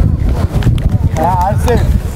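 Men's voices shouting across a rugby pitch, clearest just past the middle, over a heavy, uneven low rumble.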